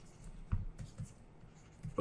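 Faint taps and short scratches of a stylus writing on a pen tablet, a few irregular strokes.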